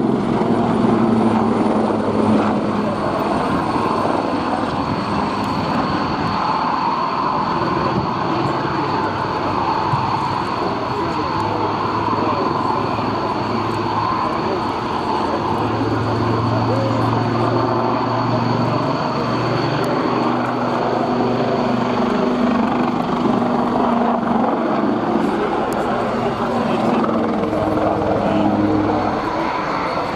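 Westland Wildcat helicopter flying a display, its rotors and twin turboshaft engines giving a steady, continuous noise with a thin high whine above it.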